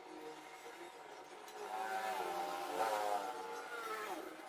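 A motor vehicle passing by, its engine note swelling louder and then dropping in pitch as it goes past near the end.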